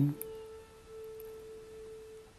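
A single soft, steady held tone of background meditation music, one sustained note with faint overtones, stopping just before the end.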